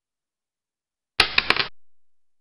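A short inserted sound effect, about half a second long, made of three sharp clicks over a brief rushing noise, set in otherwise total digital silence.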